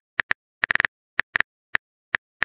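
Phone keyboard typing clicks, the key-tap sound of a simulated text message being typed out. About a dozen short, sharp taps at an uneven pace, with a quick flurry just under a second in and silence between taps.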